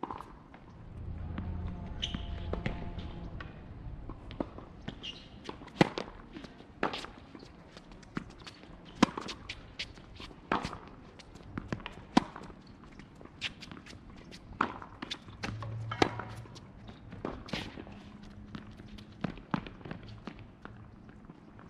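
Tennis ball being hit back and forth on a hard court: sharp racket strikes and ball bounces every second or so, the loudest about six, twelve and sixteen seconds in. A low rumble sounds underneath in the first few seconds.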